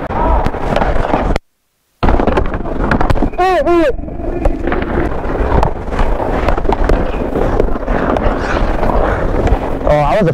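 Ice hockey play picked up by a body-worn Bluetooth microphone: a steady scraping, rubbing rush of skates on ice and mic noise, with frequent clacks of sticks and puck. The audio cuts out completely for about half a second near the start, and a short falling shout comes about three and a half seconds in.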